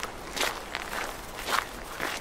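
Footsteps walking on a dirt path, a step about every half second.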